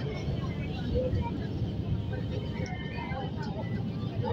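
Steady low rumble of a metro train carriage running along the track, heard from inside the car, with faint passenger voices.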